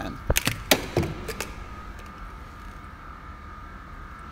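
A quick series of sharp clicks and taps as a 5 amp blade fuse is handled and pushed into the instrument-panel fuse box, then a low steady hum with a faint steady whine.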